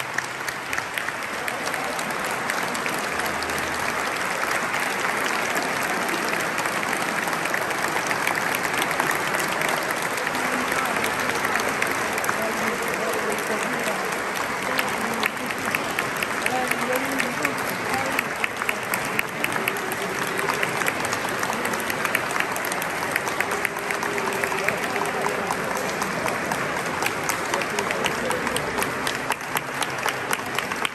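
Audience applauding at the end of an orchestral concert, a dense, steady clapping that builds over the first few seconds and then holds, with voices in the crowd mixed in.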